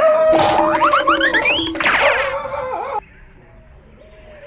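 Cartoon comedy sound effects: a held tone under a run of rising whistle-like glides, loud for about three seconds and then cutting off suddenly.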